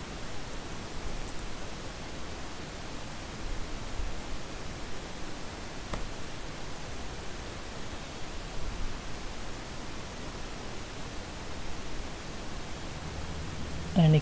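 Steady microphone hiss and room noise, with a single faint click about six seconds in.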